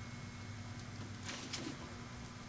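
Faint handling noises on a tabletop, two brief soft scrapes about a second and a half in, as a glue gun is set down and foam pieces are picked up, over a steady low hum.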